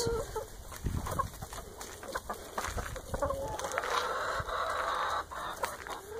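A mixed backyard flock of chickens (Rhode Island Reds, Ameraucanas and Jersey Giants) clucking in short scattered calls, with one longer drawn-out call about four seconds in.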